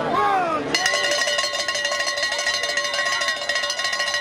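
A cowbell shaken rapidly, a continuous bright ringing with quick repeated strikes, starting about a second in and running on steadily. A brief shout comes just before it.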